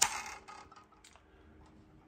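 Handling noise as the camera is moved: one sharp knock right at the start, then a few faint clicks and rustles over the next half second, fading to a quiet room with a faint steady hum.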